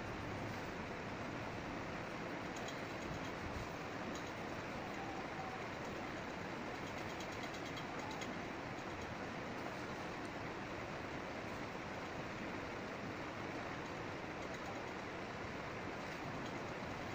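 Steady background noise, with faint light scratches of a pencil drawing on paper now and then.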